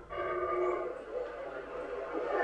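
Howler monkey howling, a drawn-out call with several tones held together that fades about a second in. The call is resonated by the monkey's throat sac.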